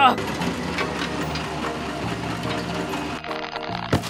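Background cartoon music with a fast, rattling engine sound effect for an animated excavator straining under load, its pull not succeeding.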